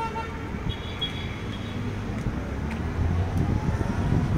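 Steady rumble of city street traffic, a little louder near the end, with a short high-pitched tone about a second in.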